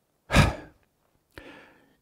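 A man's breath, let out close to a headset microphone just after the start, then a fainter, shorter breath about a second later.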